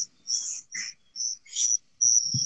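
Crickets chirping in short, high-pitched bursts, a few each second, over a faint steady high trill, picked up through an open microphone on a video call.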